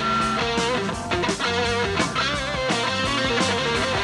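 Rock band playing an instrumental passage live, with a lead electric guitar carrying the melody in bent, wavering notes over bass and a steady drum beat.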